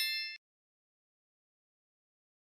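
The ringing tail of a bright, bell-like chime sound effect from an animated subscribe-button notification bell, stopping abruptly less than half a second in.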